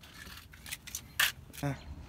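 A few short rustles and clicks of the phone being handled and swung around, the loudest about a second in, followed by a brief "huh".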